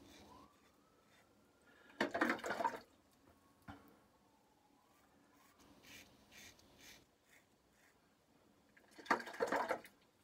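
Safety razor scraping through lathered stubble in short, faint strokes, with two brief louder water splashes, about two seconds in and near the end, as the razor is rinsed.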